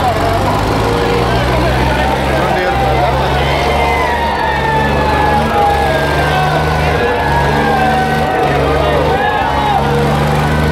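New Holland 3630 tractor's diesel engine pulling hard at full load in a tug-of-war. Loud crowd voices and shouting sound over it.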